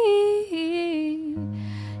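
Young woman's voice holding a sung note that steps down in pitch, over an Eastwood electric tenor guitar. About one and a half seconds in, a low guitar note starts and rings steadily, followed by a quick breath before the next phrase.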